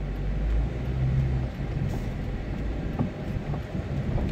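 Low engine drone and road noise inside a moving car's cabin.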